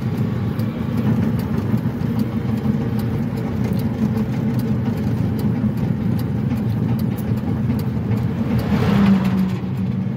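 Cabin noise of a Piaggio Ape E City electric three-wheeler driving at speed: a steady low rumble of tyres and road with a faint hum from the drive. About nine seconds in it swells louder as an oncoming truck comes alongside.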